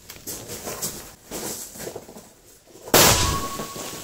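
A single shot from an AK-200 assault rifle in 5.45 mm, with its long barrel and standard flash hider, firing a 7N6 cartridge. The shot comes about three seconds in, loud and sudden, with a long echoing tail in which a thin ringing tone lingers.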